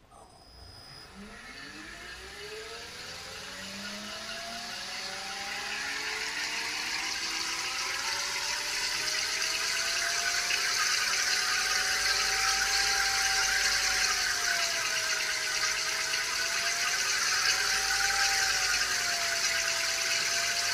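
TM4 electric drive unit on a bench rig spinning up in forward under throttle: a whine from the motor and gearing that rises in pitch over the first several seconds, then holds, wavering slightly, with a growing hiss above it.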